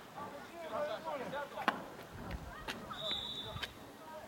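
Distant shouting of football players across the pitch, with one sharp thud of a football being kicked a little under two seconds in and a few fainter knocks later.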